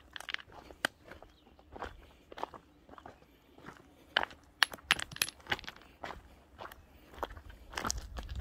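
Footsteps crunching on a loose, stony path, uneven steps about one or two a second, with a few sharper clicks of stones knocking together around the middle.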